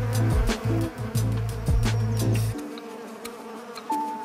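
Honeybees buzzing around an open hive, heard over background music with a low bass and a regular beat; the bass drops out about two-thirds of the way through.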